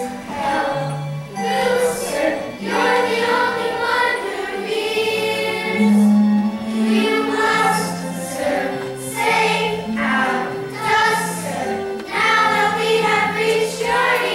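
A chorus of children's voices singing a musical-theatre ensemble number over instrumental accompaniment with a moving bass line.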